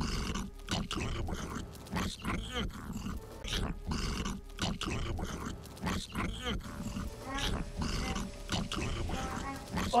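A person's voice making rapid, irregular non-word noises, several a second, animal-like rather than speech.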